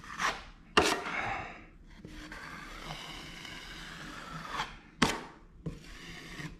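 Steel drywall knife scraping along an inside corner, pressing paper joint tape into wet joint compound: a few quick scraping strokes, the sharpest about a second in and near the end, with a softer steady rubbing between them.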